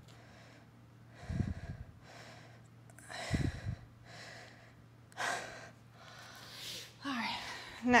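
A woman's hard, breathy exhalations, one about every two seconds, from the effort of repeated leg lifts during a bodyweight exercise. She starts speaking near the end.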